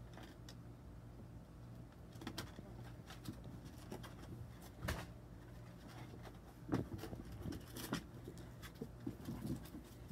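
Small dogs playing rough on a plastic pet ramp: short, low play growls and grunts, mostly in the second half, with scattered knocks and clicks from paws and the ramp, over a steady low hum.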